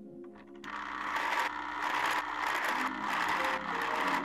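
Benchtop drill press boring into a wooden board with a large twist bit; the cutting noise starts about a second in and breaks off briefly a few times as the bit is fed in. Background music plays underneath.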